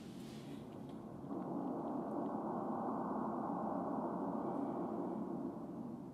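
Cinematic intro soundscape of a music video: a low, hazy drone with no clear notes that swells about a second in, holds steady and eases off near the end.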